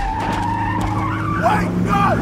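A car engine running while its tires squeal in a skid, and a man shouts "No!" at the end.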